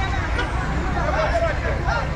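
A crowd of people talking and calling out at once over a strong low rumble.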